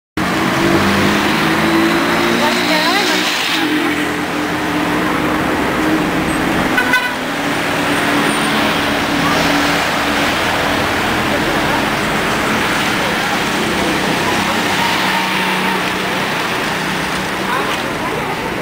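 Street traffic: car engines running and passing at the curb, with a steady low engine drone through much of it and a brief clatter about seven seconds in. Voices are heard in the background.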